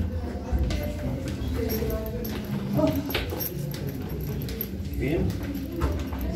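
Footsteps going down a steep stairway, a few irregular thumps and knocks, with people's voices in the background.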